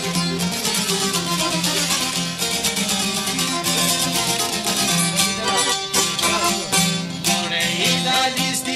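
Instrumental passage of Albanian folk music: fast, continuous plucking on long-necked lutes of the çifteli and sharki kind, with no clear singing.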